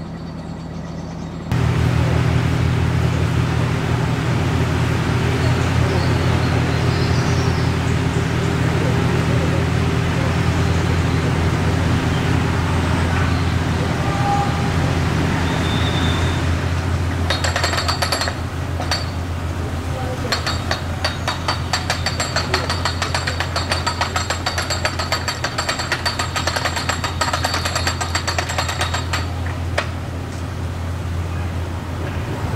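A narrowboat's diesel engine running steadily under way, a low, even drone that cuts in abruptly about a second and a half in. Over the second half a fast, even rattling clatter rides on top of it.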